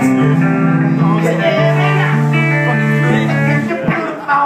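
Amplified electric guitars noodling between songs during a soundcheck, with held notes and loose chords. The playing stops just before the end.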